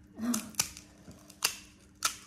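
Two sharp, crisp cracks a little under a second apart, as a hollow fried puri shell is broken open by a thumb pressing into it.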